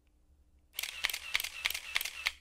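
Camera shutter firing in quick succession, about six clicks a second, starting just under a second in after a short quiet gap.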